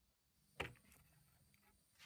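Near silence, with one brief faint sound about half a second in.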